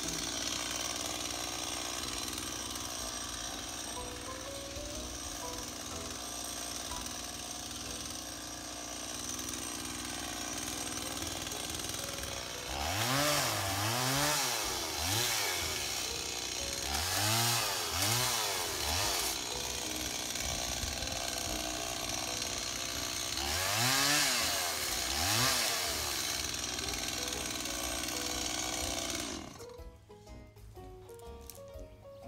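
Gasoline chainsaw running steadily, then revved up and back down in pairs three times, and cut off suddenly near the end.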